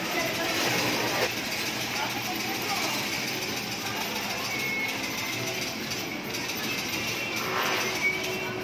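Busy game-arcade din: steady background chatter of a crowd mixed with the noise of arcade machines and kiddie rides, with a short high electronic tone near the middle.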